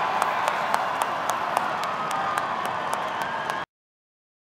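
Arena crowd applauding in reaction to an ippon in a judo bout, with many sharp individual claps over the crowd noise. It cuts off suddenly near the end.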